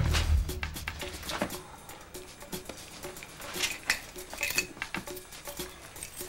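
Tense background music: a low note fading out, then a soft pulse of about two beats a second. Over it a ring of keys clinks and jingles now and then as it is handled.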